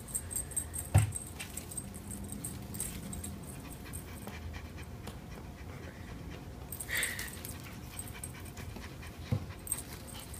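A domestic cat panting open-mouthed, worn out from play with a feather wand toy. A thump comes about a second in and another near the end, and there is a short sound about seven seconds in.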